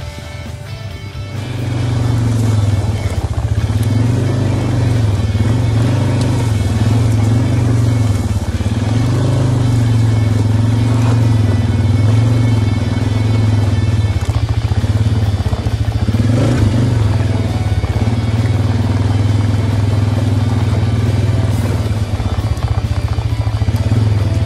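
Husqvarna chainsaw on an Alaskan chainsaw mill held at high throttle, cutting a long rip along a log. Its pitch dips and recovers slightly as the chain loads up in the wood. It comes in loud about a second and a half in, with music underneath.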